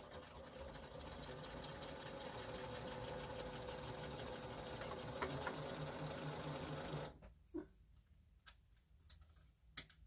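Electric sewing machine motor running steadily while winding a bobbin, then stopping about seven seconds in; a few light clicks follow.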